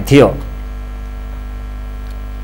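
Steady low electrical mains hum in the audio, left bare once the narrator's last word ends about half a second in.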